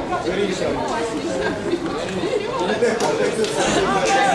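Many voices talking and calling out at once, overlapping so that no words come through clearly.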